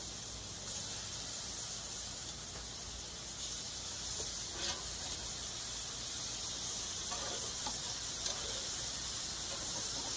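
Meat cutlets sizzling on a gas grill, a steady high hiss, with a few light clicks of metal tongs as the pieces are turned.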